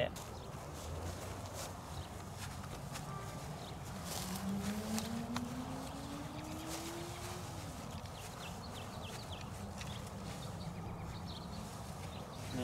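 Quiet outdoor ambience with a steady low rumble and faint soft ticks, likely steps on grass. A faint hum rises slowly in pitch for about three seconds midway.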